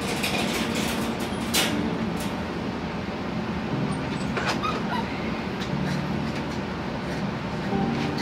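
Steady low rumbling room noise with scattered knocks and rattles of handling in a wire puppy pen, and a few faint high whines from the puppies about four and a half seconds in.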